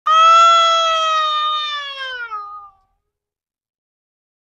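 A toddler crying: one long wail of about two and a half seconds, held steady and then falling in pitch as it fades out.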